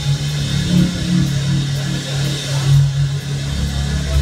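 Live rock band playing through a concert PA, with guitar to the fore over bass. The deepest bass thins out and comes back in strongly about three and a half seconds in.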